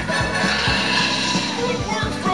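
Film soundtrack playing back on a television: continuous music with voices mixed in.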